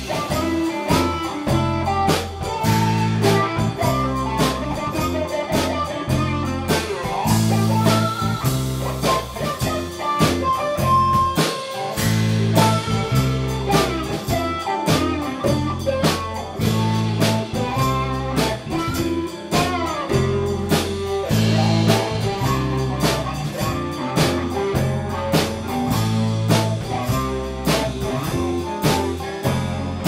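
A live band playing blues-rock on electric guitars over bass and a drum kit, with a lead guitar line bending notes above a steady beat.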